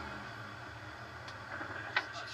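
Race car engine running steadily, heard from inside the cabin, with one sharp click near the end.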